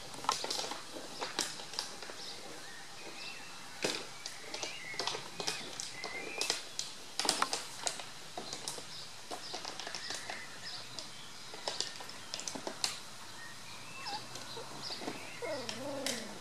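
Outdoor garden ambience with faint, short high chirps and squeaks, and scattered sharp clicks throughout.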